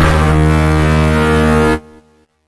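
UVI Digital Synsations DS1 software synthesizer playing its 'Crunch Power' preset: one held low note, rich in overtones, that stops sharply near the end.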